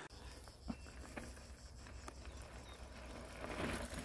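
Faint outdoor quiet with a low steady hum and a few light clicks. Near the end, a mountain bike approaching on a dirt trail grows louder.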